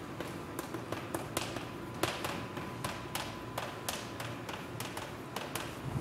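Chalk tapping and scratching on a blackboard as words are written: a run of sharp, irregular taps, about three or four a second.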